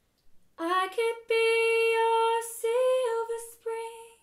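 A woman singing solo with no guitar heard, starting about half a second in with a few long held notes separated by short breaths.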